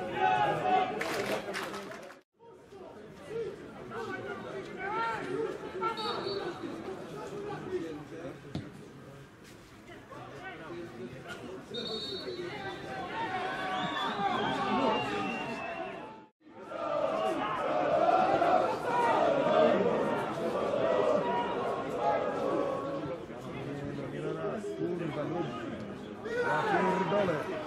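Indistinct chatter of several voices, talking and calling over one another, cutting out briefly twice.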